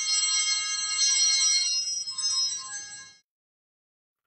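Altar bells (sanctus bells) shaken at the elevation of the chalice, a bright jangling ring of several high tones that stops about three seconds in; they mark the elevation after the consecration of the wine.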